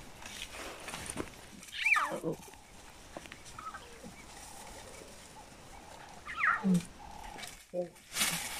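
Lions calling: two falling calls, one about two seconds in and another about six and a half seconds in.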